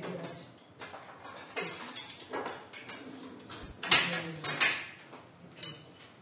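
Spoons and dishes being handled on a kitchen counter: a run of clinks and knocks, loudest about four seconds in.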